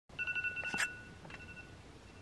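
iPhone alarm going off: a bright electronic tone in quick pulses, with a knock about three-quarters of a second in, then a fainter second phrase of the tone that fades.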